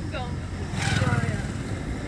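A motorcycle passing close by a moving car on a dirt track, heard from inside the car: its engine swells up about a second in and then fades, over the car's own steady low running rumble.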